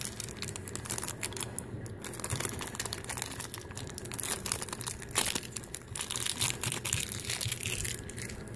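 Thin clear plastic bag crinkling as fingers work a small toy figure out of it, with irregular crackles throughout and a sharper crackle about five seconds in.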